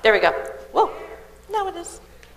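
A person's voice making three short wordless calls, the middle one rising and falling in pitch.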